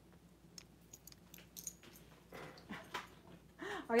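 Faint, scattered light clicks and clinks of costume jewelry pieces being handled, with a short rustle a little past the middle.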